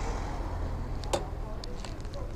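Motorcycle engine idling steadily, with a single sharp click about a second in.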